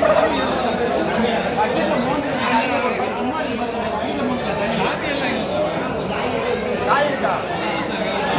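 Many people talking at once in a large hall: a steady babble of overlapping voices.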